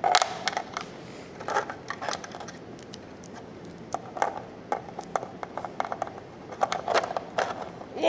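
Small plastic wrestling figures tapping and knocking against a toy wrestling ring's mat and ropes as they are moved by hand. The clicks and taps come in irregular clusters.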